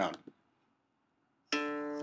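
Recorded acoustic guitar sample in D (the guitar_D.wav sound effect) played back by an iPhone app. After a second and a half of silence it starts suddenly about a second and a half in and rings on steadily.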